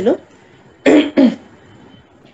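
A woman clearing her throat: two short, rough bursts close together about a second in.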